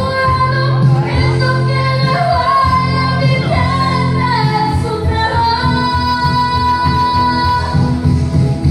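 A woman singing karaoke into a microphone over a backing track, amplified through the bar's sound system, holding one long note near the end.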